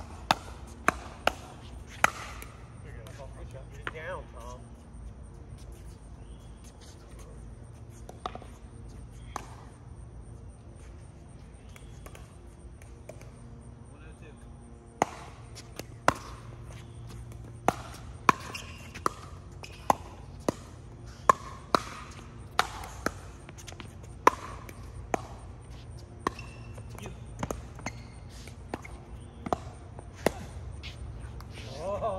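Pickleball paddles hitting a plastic pickleball in rallies, sharp pops one after another. There is a quick burst in the first two seconds, a couple more around eight to nine seconds in, and a long rally of rapid hits from about fifteen to twenty-six seconds in.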